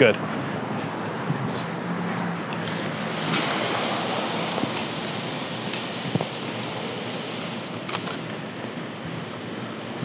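Steady outdoor city background noise, a mix of distant traffic and wind, with a few faint clicks.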